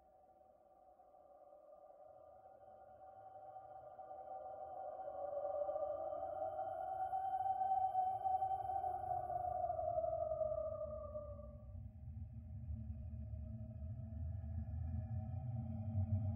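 Creepy horror ambience drone: an eerie sustained tone swells in and holds, then sinks slightly in pitch and fades about ten to twelve seconds in, while a low rumble beneath it grows louder toward the end.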